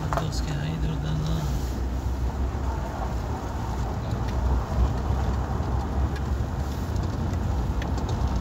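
Car interior noise while driving on an unpaved gravel road: a steady low rumble of engine and tyres on loose stones, with a few faint knocks.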